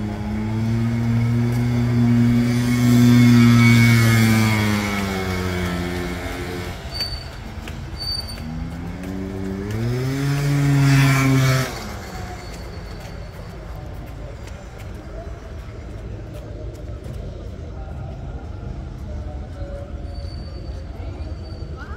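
KTM RC 250 R single-cylinder race bikes running at low revs as they ride slowly past close by, the engine pitch rising and then falling over the first six seconds. A second surge of engine sound climbs in pitch about halfway through and cuts off abruptly.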